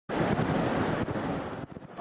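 Air rushing through a wind tunnel, a loud steady noise that dies away about one and a half seconds in.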